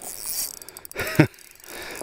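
Spinning reel on an ice-fishing rod being cranked, its gears running with a fine, rapid clicking. A short vocal sound from the angler about a second in.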